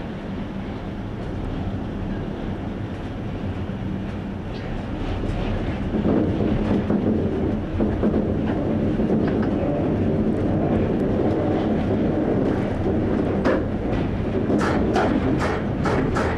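Train running along the track, heard from the driver's cab: a steady rumble and hum that grows louder about six seconds in, then a quick run of wheel clicks over the rails near the end.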